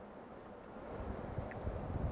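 Wind buffeting the microphone outdoors: a faint, irregular low rumble that picks up a little about halfway through.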